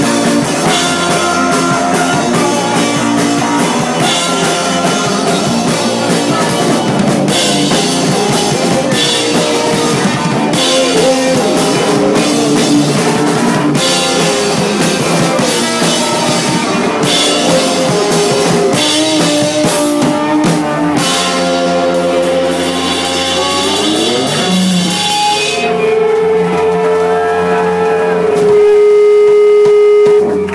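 Live rock band with electric guitars, drums and a singer, played loud on stage. In the last few seconds the drums drop out and one long note is held to the end.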